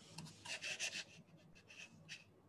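Faint scratchy rubbing: a quick run of short scrapes about half a second in, and a couple of weaker ones near the end.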